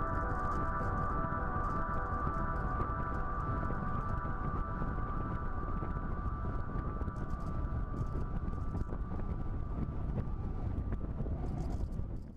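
Onboard sound of a radio-controlled model plane in flight: a steady, unchanging drone with wind rushing over the microphone.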